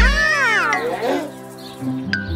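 Cartoon children's voices giving one long exclamation of amazement that rises and then falls over about a second, over light children's background music.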